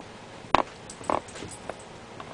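A pet sniffing and snorting at a toy as it plays: a few short, sharp snorts, the strongest about half a second and about a second in.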